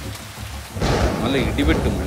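Steady rain with a loud thunderclap about a second in, rumbling on to the end.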